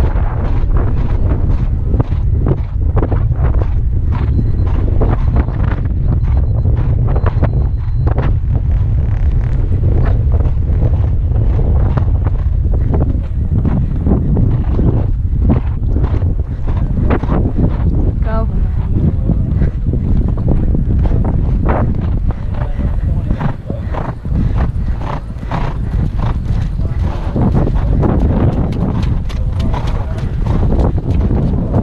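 A ridden horse's hoofbeats in a steady run on sand footing, with wind rumbling on a helmet-mounted microphone.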